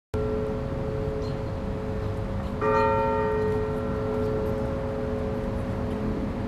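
A large bell tolling slowly, already ringing as the sound cuts in, with a fresh stroke about two and a half seconds in; each stroke rings on in a long, slowly fading hum.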